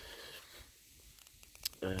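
Quiet handling noise as a hand picks a spiked firework stick up off asphalt, with a few light clicks about one and a half seconds in; a man's voice starts near the end.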